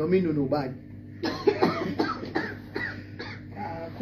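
Speech in a room with a cough about two seconds in.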